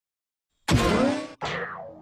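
A cartoon boing sound effect starting abruptly about two-thirds of a second in, its pitch dipping and rising, then a tone sliding steeply down in pitch and fading out.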